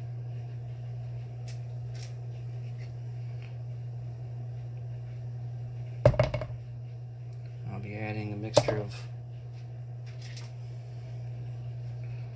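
Rocks of iron-stained quartz and chert clicking against each other as they are picked through by hand, with two loud knocks about six and eight and a half seconds in as stones land in a bucket. A steady low hum runs underneath.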